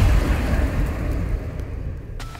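Sound effect of a TV channel's animated logo sting: a deep rumbling boom that fades away steadily.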